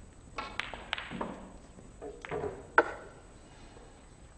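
Snooker balls clicking hard against each other in two quick clusters of knocks with a short ringing ping, ending in one loud sharp click near the end.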